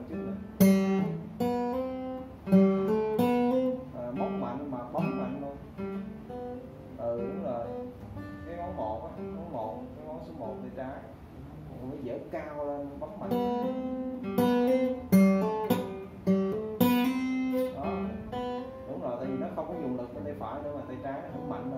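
Two steel-string acoustic guitars playing together. Sharp, loud strummed chords come in a run at the start and again in the second half, with softer picked notes between them.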